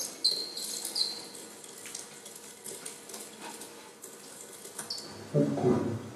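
Experimental electroacoustic sound piece played over loudspeakers: short high chirps with falling tails and scattered clicks over a faint hiss, then a louder low rumbling burst near the end.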